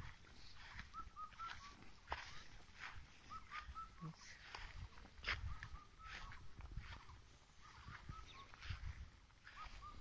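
Short high animal calls in quick runs of three or four, repeating every second or so, over a low uneven rumble.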